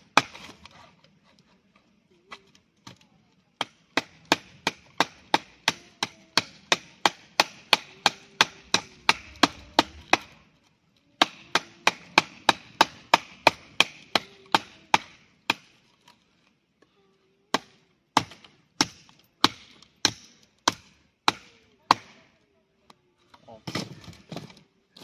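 Large fixed-blade knife chopping into a wooden branch: fast runs of sharp blows, about three a second, broken by a short pause, then slower, scattered strikes near the end.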